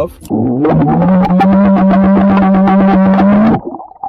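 A man's long, loud, rough vocal blast with his mouth right at the microphone. It rises briefly in pitch, holds at one pitch for about three seconds, then stops shortly before the end.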